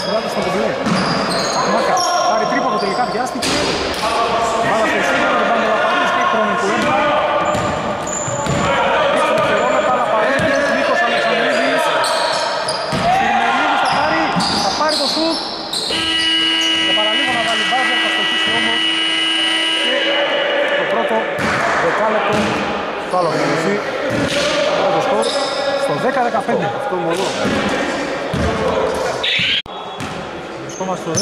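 Indoor basketball game: the ball bouncing on the hardwood court, sneaker squeaks and players' and coaches' shouts, all echoing in a large gym. About halfway through, a steady tone holds for about four seconds.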